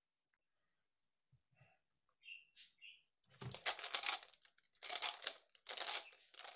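Skewb puzzle cube being turned fast in a speedsolve, its plastic pieces clacking in quick bursts of turns that start about halfway through, after a few faint handling sounds.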